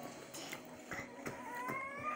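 A faint, high, drawn-out call that starts about halfway through and rises slowly in pitch, over quiet room tone with a few light clicks.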